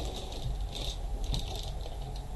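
Items being handled and lifted out of a box: a few light clicks and rustles of packaging at irregular moments.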